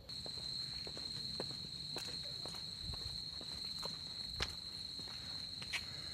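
Footsteps on a trail, irregular soft knocks, over a continuous high-pitched insect trill that holds one note throughout.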